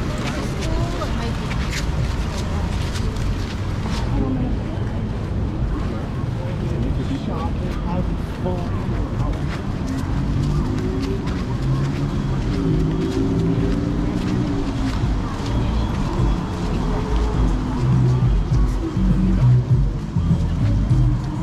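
Busy sidewalk street ambience: voices of passersby and traffic on the road, with a low rumble throughout and music in the background, more noticeable in the second half.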